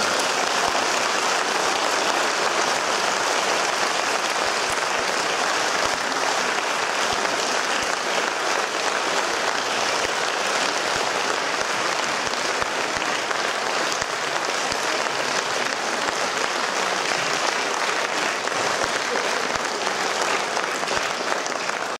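Concert audience applauding steadily and at full strength throughout.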